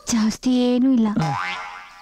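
Film dialogue: a voice speaking a few short phrases. About a second and a half in, a comic sound effect plays over it, a quick rising glide in pitch.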